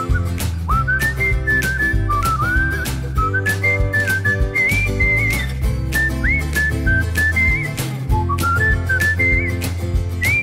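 Background music: a whistled melody with little slides between notes, over a steady beat and a bass line.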